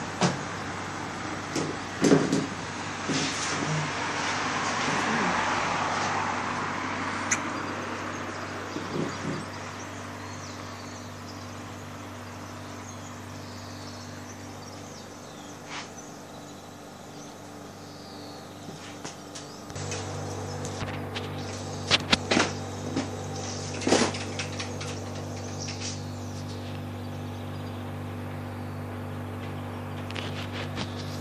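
A single car passes on the street below, its engine and tyre noise swelling over a few seconds and then fading. After that comes a steady low hum with a few sharp knocks and clicks.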